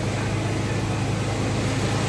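Steady low mechanical hum over an even wash of city street noise, unchanging throughout.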